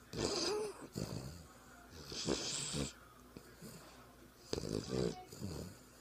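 Boston terrier snoring: three breaths about two seconds apart, the middle one with a hissing edge.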